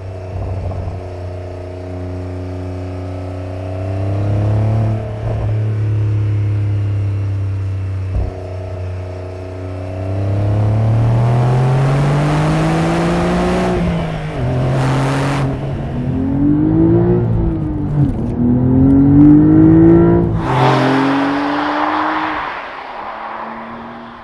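Porsche 911 (992) Carrera S's 3.0-litre twin-turbo flat-six, heard from a camera low by the rear wheel with tyre noise: running steadily at first, then from about ten seconds in accelerating hard, the revs climbing and dropping sharply several times as it is worked up through the gears of its manual gearbox. Near the end the revs fall away as it slows.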